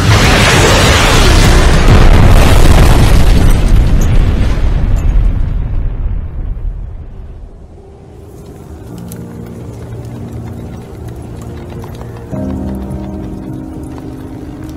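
Film sound effect of a missile explosion: a loud, long rumbling boom that fades away over about six seconds. Background music of held notes then comes in and swells near the end.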